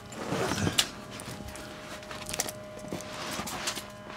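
Rustling and a few light clicks and knocks as a camera is handled and moved about under a car on a concrete garage floor, over a steady hum.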